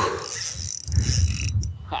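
Spinning fishing reel whirring under the load of a hooked jack crevalle during the fight, a steady high whir that stops about a second and a half in, with low rumbling underneath.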